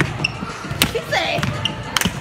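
Sharp volleyball impacts in a gym, about one a second, three in all.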